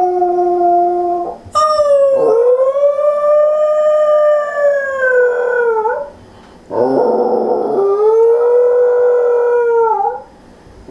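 Pembroke Welsh corgi howling in long drawn-out calls: the tail of one howl, then a long howl of about four seconds that swoops up at the start and falls away at the end, then after a short breath a third howl that starts rough and settles into a steady tone.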